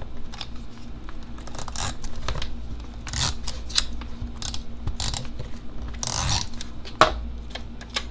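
Paper and a sticker being handled and pressed onto a planner page: scattered light rustles and taps, with a short rasping swipe about six seconds in and a sharp click about a second later.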